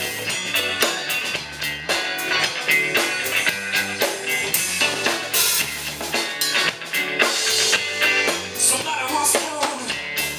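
A live rock band playing an instrumental passage: drum kit keeping a steady beat with cymbals, under bass guitar, electric guitars and keyboard.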